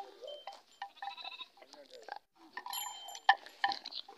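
A goat bleating briefly about a second in, with a few sharp knocks and clicks later, the loudest a little after three seconds.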